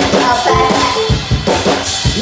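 Band playing the instrumental opening of a twist number: a drum kit with kick and snare keeping a quick, steady beat of about three hits a second, with held instrument notes over it.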